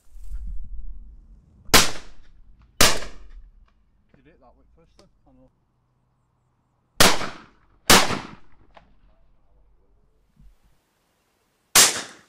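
Five shotgun shots at wood pigeons: two shots about a second apart, a pause of about four seconds, another pair about a second apart, then a single shot near the end.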